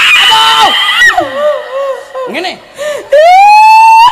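Loud shouted cries through a stage microphone. There is a held cry at the start, then wavering calls, and from about three seconds in a loud yell rises and holds at a high, steady pitch.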